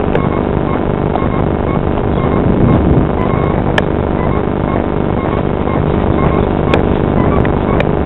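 Steady engine noise of an airliner climbing away after takeoff, heard from the ground and mixed with wind buffeting the microphone, with a few sharp clicks.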